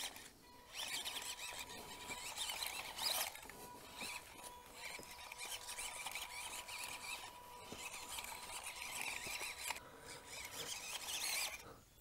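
Small brushed 130-size electric motor and plastic gearbox of a 1/16 WPL B24 RC crawler whining as the truck crawls through mud ruts. The sound is faint and uneven, with brief dips as the throttle eases off.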